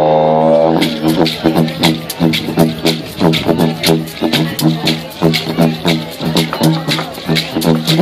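Didgeridoo played with a steady low drone and rich overtones. In the first second the tone sweeps like a changing vowel, then it breaks into a fast, even rhythmic pulse that carries on to the end.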